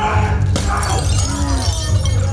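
Bricks being smashed in a hand-to-hand combat display, with shouting voices over a loud, steady low rumble.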